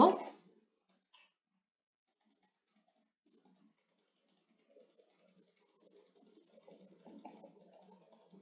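Faint, fast, regular clicking, about eight clicks a second, from drawing by hand on a computer whiteboard screen. It starts about two seconds in, with a faint low rustle under it in the second half.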